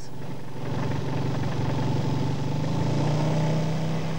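Motorcycle engine running steadily at low revs, its pitch edging up slightly about three seconds in.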